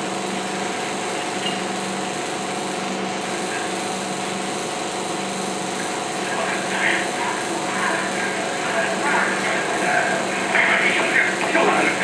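16mm film projector running with a steady mechanical whir under the print's optical soundtrack. Indistinct voices come and go over it from about halfway through, growing busier near the end.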